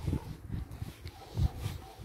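Footsteps of a person walking over ground covered in fallen leaves: soft low thuds about every half second, with a light rustle of leaves.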